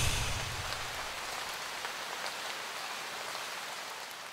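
A soft, even hiss of rain-like noise with faint scattered ticks, slowly fading out. A low note from the music dies away in the first second.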